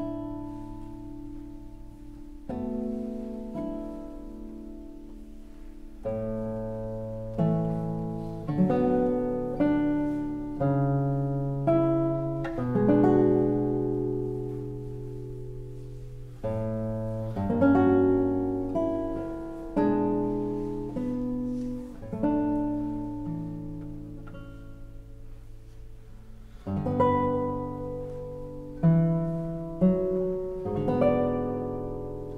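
Solo classical guitar playing slow, spacious music: plucked single notes and chords, each left to ring and die away before the next.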